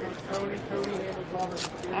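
Foil wrapper of a trading-card pack being torn open and crinkled by hand, with a sharp crackle about one and a half seconds in, over faint background voices.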